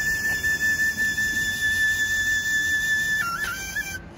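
Small end-blown flute played solo, holding one long high note for about three seconds, then dropping into a few quick, slightly lower notes near the end.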